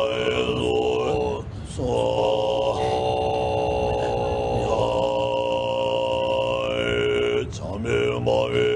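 Tibetan monks' throat-singing: deep, long-held chanted notes with a high whistling overtone sounding above them. The chant breaks briefly for breath about a second and a half in and again near the end.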